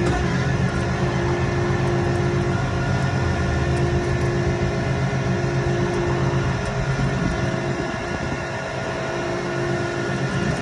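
Tow truck engine running steadily to drive the hydraulic winch as it pulls a van up the rollback bed, with a steady whine-like tone above the engine sound. The low engine sound thins out and the level eases a little about seven to eight seconds in.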